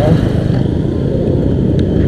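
Motorcycle engine running at low revs as the bike slows and pulls over to stop: a steady low rumble.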